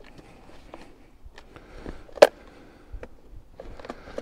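Quiet outdoor scene with faint crunching of dry leaves underfoot and small ticks as a log is paced off by foot. There is one sharp knock with a brief ring about two seconds in. The chainsaw is not running.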